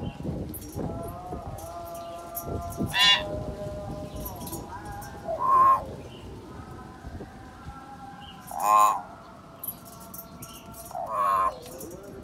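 Common hill myna calling: four loud, harsh calls, one every two and a half to three seconds, with softer held whistled notes between them.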